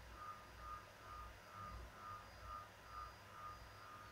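Near silence: faint room tone, with a weak high beep repeating about twice a second.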